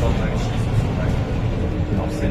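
Steady low-pitched running noise of a MAN NL323F city bus's MAN D2066 diesel engine and drivetrain, heard inside the cabin, with passengers' voices over it.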